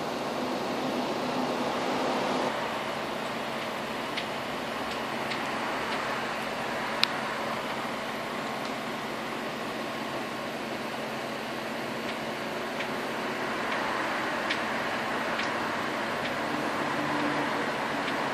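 Steady noise of a running fan, with a few faint clicks scattered through.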